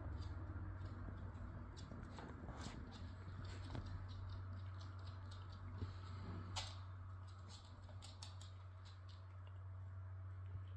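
Dogs' claws clicking and tapping faintly on a wooden floor, scattered irregular clicks over a steady low hum, with two slightly louder taps about six seconds in.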